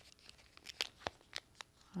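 Wrapping paper being folded by hand: a few faint, sharp crinkles spread over two seconds.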